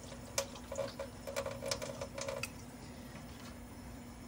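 Diluted shampoo poured from a glass measuring jug onto a wet puppy's coat in a sink, splashing in a run of small irregular splashes for the first two and a half seconds, then quieter.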